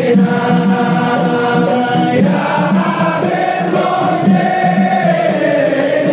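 A group of men singing a devotional chant together, led through a microphone, in long held notes that shift slowly in pitch.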